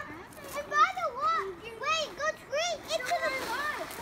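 Children's high-pitched voices calling out and shouting in quick, short bursts, excited but without clear words.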